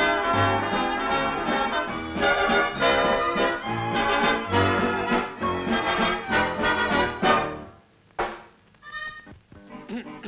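Orchestral film music with brass. It breaks off about eight seconds in, followed by a single sharp knock and a few sparse notes.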